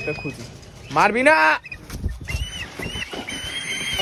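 A man's drawn-out, rising vocal call about a second in, followed by a series of short, high whistling calls from a large brown bird of prey, the last one held longer as the bird lands on his head.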